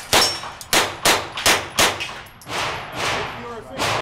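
A rapid string of handgun shots, about two a second and unevenly spaced as the shooter moves between targets, each ringing out in the indoor range's echo.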